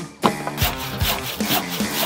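Handsaw cutting through a timber board in quick back-and-forth strokes, several a second, starting a moment in, over background music.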